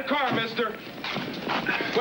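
Speech: people's voices talking, with no other sound standing out.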